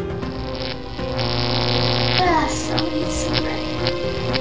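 Background music of held, sustained tones, with a wavering, sliding tone about two seconds in.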